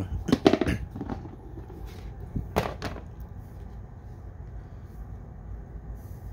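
Plastic reptile tub being handled and pulled from a rack system: a cluster of knocks and scrapes in the first second, then two more sharp knocks a little before the middle.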